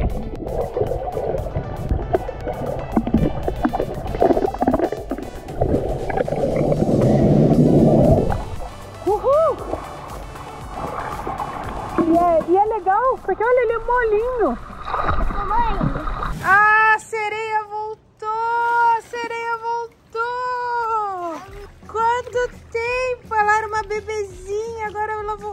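Muffled underwater sloshing and gurgling of pool water for the first several seconds. Then, from about nine seconds on, music carrying a high, wavering melody line.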